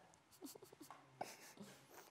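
Near silence: room tone, with faint murmured voices and a single light knock just after a second in.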